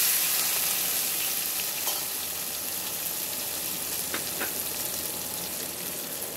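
Boiled peas hitting hot ghee and cumin in a steel pot: a loud sizzle bursts up as they go in, then eases to a steady frying hiss. There are a few light knocks.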